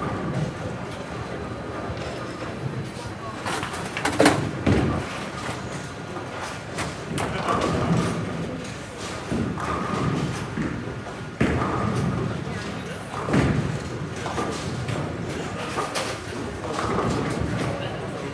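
Bowling alley din: background chatter with several loud thuds and crashes of balls and pins on the lanes, the loudest about four seconds in and others near eleven and thirteen seconds.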